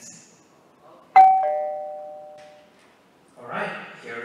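Two-tone doorbell chime: one ding-dong, a higher note struck about a second in and a lower note just after, both ringing out and fading over about a second and a half.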